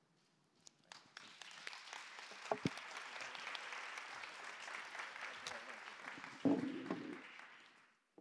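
Audience applause at the close of a panel session, building up about a second in, holding steady, then dying away near the end. A short louder sound stands out partway through.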